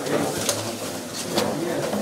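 Ballot box being tipped and shaken out over a plastic tub, a few sharp knocks and rustles of ballot papers sliding out, over a general murmur of voices in a crowded hall.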